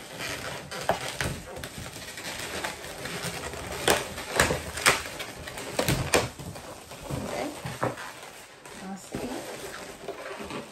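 Latex 350 twisting balloons rubbing and squeaking as they are twisted and knotted by hand, with a few sharp snaps and squeaks in the middle.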